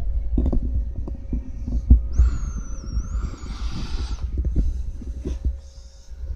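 Low, uneven rumble and irregular soft knocks of a handheld camera being moved about, with a thin high whistle over a hiss from about two seconds in, lasting about two seconds.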